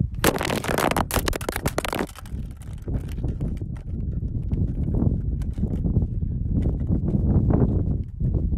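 Wind buffeting a phone's microphone outdoors: a heavy, uneven low rumble, with a loud crackling burst of handling noise in the first two seconds as the phone is swung up.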